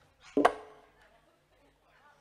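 A single sharp percussive smack about half a second in, with a short pitched ring that dies away quickly.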